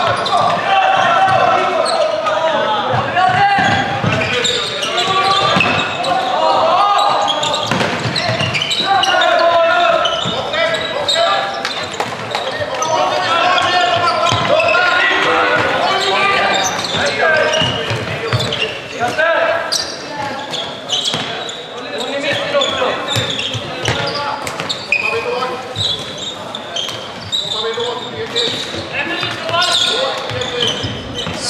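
Floorball game sound in a large sports hall: players and spectators calling and shouting indistinctly, over frequent sharp clacks of plastic sticks and the hollow ball on the hall floor.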